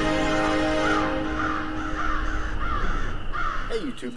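Intro music with a sustained chord that fades out in the first second, then a run of crow caws, about three a second, over a low rumble.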